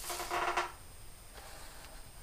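Felt-tip marker drawn across paper: a scratchy, squeaky stroke lasting about half a second at the start, then a fainter stroke later.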